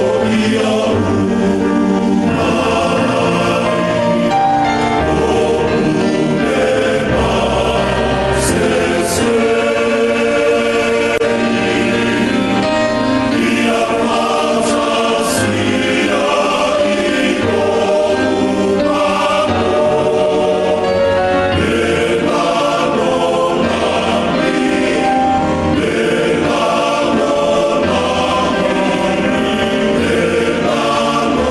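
A choir singing a hymn, with sustained chords moving from note to note.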